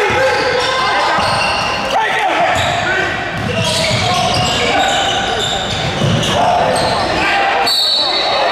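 Basketball being dribbled on a hardwood court, with repeated bounces and short high squeaks of sneakers as players move. Players' and onlookers' voices carry through the reverberant gym.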